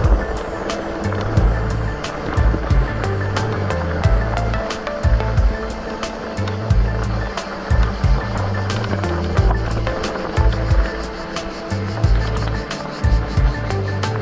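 Background music with a steady beat and a repeating bass line, over the rolling rumble of mountain bike tyres on a gravel dirt trail.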